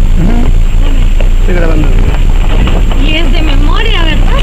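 Inside the cab of a vehicle driving on a rough gravel road: a loud, steady low rumble from the engine and tyres, with indistinct voices talking over it.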